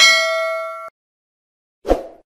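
A bell 'ding' sound effect of a subscribe-button animation: one bright, ringing chime that fades and then cuts off abruptly just under a second in. Near the end comes a short low thump.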